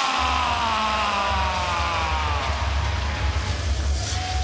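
A ring announcer's long, drawn-out shout of the fighter's name, the final vowel held for about three seconds and sliding down in pitch, over the steady pulsing bass of walkout music.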